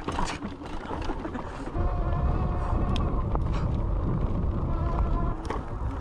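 Fat-tire electric bike rolling over a rough dirt trail: a low rumble of tyres and wind on the chest-mounted camera, growing louder about two seconds in, with a few sharp clicks and a faint steady whine.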